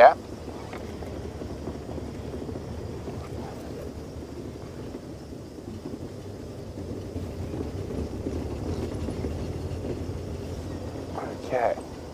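Open safari vehicle driving slowly along a sandy dirt track: a steady low engine and tyre rumble, a little louder about seven to ten seconds in.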